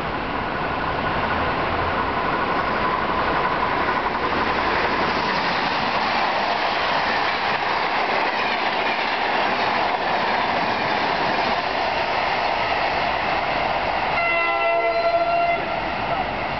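Amtrak long-distance train passing through the station at speed: a steady rush of wheel and car noise. Near the end a train horn sounds for about a second and a half, then cuts off.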